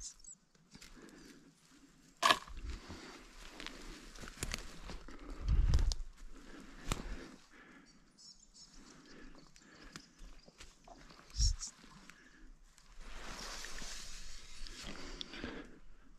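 Close movement noise from a person on the forest floor: clothing and gear rustling and footsteps on leaf litter and twigs. There is a sharp knock about two seconds in, a dull thump near the middle, another about three-quarters through, and a longer spell of rustling near the end.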